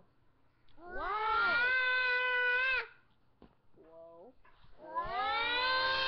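A toddler girl squealing with delight: two long, high-pitched squeals of about two seconds each, the first starting about a second in and the second about five seconds in, with a short lower vocal sound between them.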